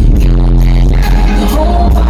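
Loud live R&B concert music over a stadium PA, with heavy bass throughout and a held note coming in near the end.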